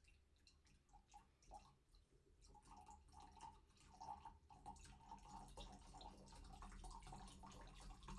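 Juice poured from a one-litre carton into a stemmed glass: a faint trickle of liquid into the glass. It starts as a few drips and fills out into a steady stream from about two and a half seconds in.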